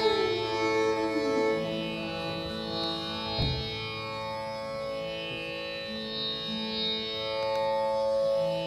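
Steady tanpura drone holding the pitch, with a violin's sliding notes over it in the first second or so and a single low mridangam thump about three and a half seconds in.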